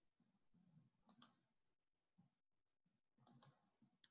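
Computer mouse button clicked twice, about two seconds apart, each click a quick pair of sharp ticks; otherwise near silence.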